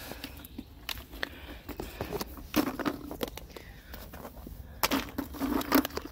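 Footsteps and rustling through dry leaves, grass and twigs, with scattered light clicks from handling plastic Easter eggs.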